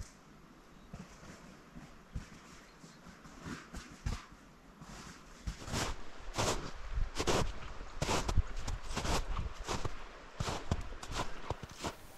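Footsteps of a hiker in boots crunching on crusted snow, faint at first and growing louder from about four seconds in, then close and steady at roughly one and a half steps a second.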